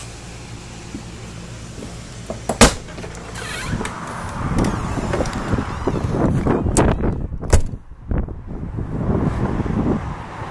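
Handling noise from walking out of a trailer's living quarters: a sharp knock about two and a half seconds in, then footsteps and wind rumbling on the microphone outside, with a few sharp clicks.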